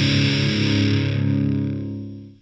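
Distorted electric guitar chord from a 90s hard rock song, held and ringing out alone with no drums or bass. It fades steadily and is almost gone by the end.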